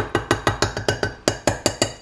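Metal spoon clinking rapidly against a saucepan as Nutella is stirred and knocked off into hot almond milk: a quick, even run of about eight sharp clinks a second.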